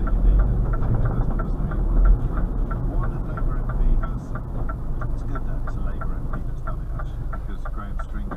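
Lorry diesel engine heard from inside the cab, running with a low drone that drops off about halfway through. Over it a turn-signal indicator ticks steadily, about three clicks a second.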